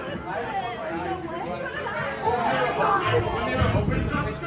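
Indistinct chatter of several voices talking over one another, with a low rumble in the last second.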